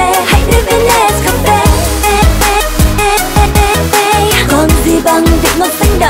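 Upbeat pop dance music with a steady, evenly repeating beat over a heavy bass line and a melody.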